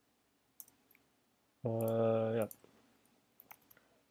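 Faint computer keyboard keystrokes, a few scattered clicks in two small groups. About halfway through, a man's voice makes one drawn-out hesitation sound on a steady pitch, lasting nearly a second, and this is louder than the typing.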